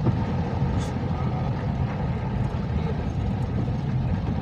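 Steady noise inside a car driving through shallow muddy floodwater: engine hum and tyres running through water on the road.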